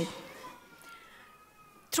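A pause in a woman's speech at a podium microphone: her last word dies away in the hall's echo, then it is almost silent but for faint thin tones until she speaks again at the very end.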